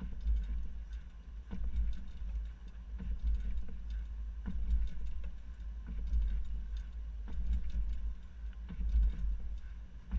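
Low, uneven rumble of wind and road noise on a camera mounted at the back of a moving SUV, with scattered clicks and knocks as a platform hitch bike rack and the bike on it jostle over alternating speed bumps.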